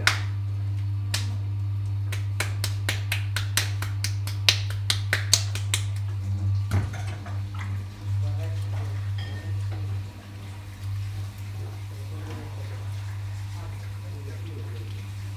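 Wet clay patted between the hands in quick slaps, about four a second for a few seconds, over the steady low hum of an electric potter's wheel. A heavier thump follows about halfway through as the lump goes down on the wheel head, then softer sounds of hands working the clay.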